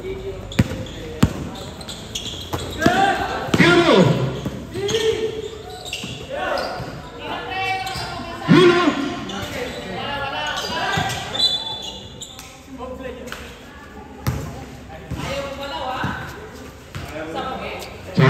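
A basketball game: players shouting and calling out on the court. A few sharp knocks, the ball bouncing on the hard court, come near the start and about two-thirds of the way through.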